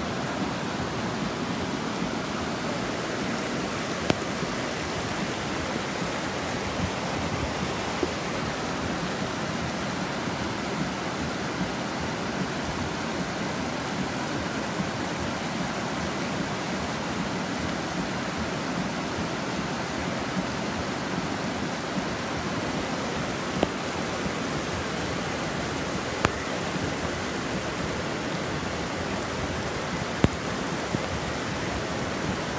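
Steady rush of heavy rain and floodwater pouring down a street, with a few sharp taps now and then.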